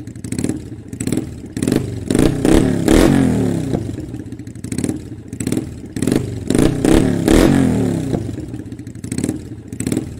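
Motorcycle engine revved again and again, the pitch falling back after each blip, with a rattly clatter.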